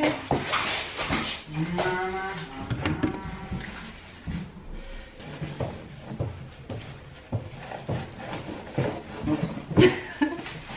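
A cloth wiping a white laminate shelf unit, with short pitched squeaks in the first few seconds and scattered knocks and bumps as the shelf is handled and turned on a wooden table.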